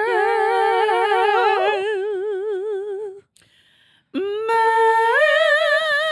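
Two women's voices singing long, wordless held notes with vibrato, overlapping in harmony at first, then one voice with a wide vibrato. After a short break about three seconds in, a new held note comes in and steps up in pitch.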